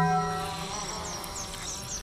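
Taco Bell's "bong" sound logo, a single bell-like tone, ringing out and fading over the first half second or so. It is followed by a faint high buzz with a few short chirps.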